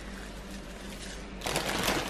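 Plastic bag of kale crinkling and rustling as a hand reaches in and pulls out leaves, loudest in a burst near the end.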